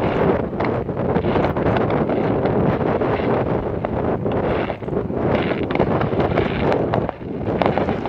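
Wind buffeting the microphone in a steady, loud rushing noise, with scattered short pops from distant fireworks.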